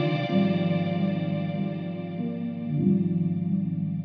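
Instrumental closing bars of an Afro-house song: sustained, effect-laden chords that change three times, with the upper notes gradually fading.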